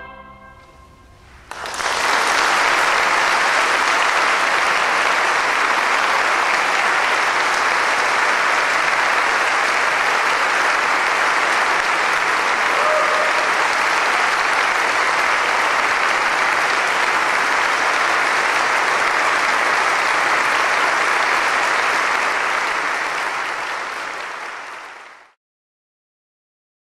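The final chord of a choir and orchestra dies away in the hall's reverberation, then steady audience applause starts about a second and a half in and fades out near the end.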